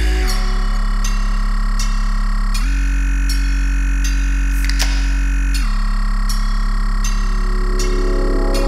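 Electronic music: sustained synthesizer chords over a deep, steady bass, moving to a new chord about every three seconds, with a light regular tick on top.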